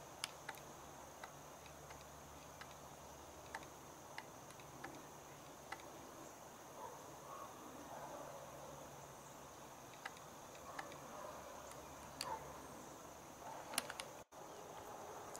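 Steady high-pitched insect trill, with a few faint sharp clicks scattered through it.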